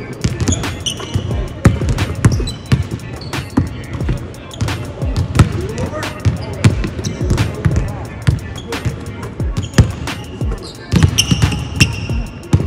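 Basketballs bouncing on a hardwood court: many sharp thuds, several a second, from dribbles and shots during a shooting drill in an empty arena.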